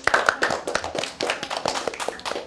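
A small group of children and an adult clapping hands in a short round of applause. The claps are quick and overlapping.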